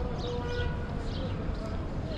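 Small birds chirping in quick, repeated falling notes, a few a second, over a murmur of people's voices.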